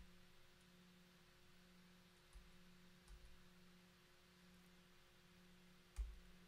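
Near silence: faint room tone with a low steady hum, broken by a few soft clicks, one at the start, two in the middle and one at the end, from a computer mouse clicking through photos.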